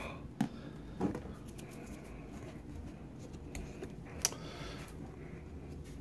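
Hard-shell bass guitar case being unlatched and opened: a few faint clicks from its metal latches, the sharpest about four seconds in, over quiet handling noise of the case and lid.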